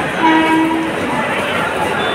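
A short single blast of a train horn, under a second long, over the steady hubbub of a packed railway platform crowd.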